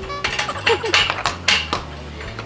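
A horse's hoof knocking against its stall gate several times, sharp and irregular, as the horse paws with a raised foreleg, impatient for its feed.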